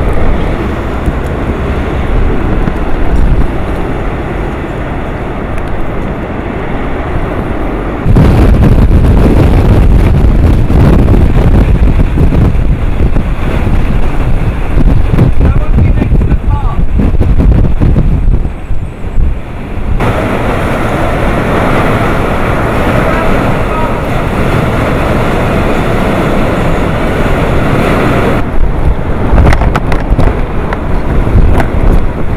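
Typhoon-force wind gusting and buffeting the microphone, with driving rain: a loud, dense rushing noise, heaviest in the low range. It changes abruptly about eight and twenty seconds in, where the shots change.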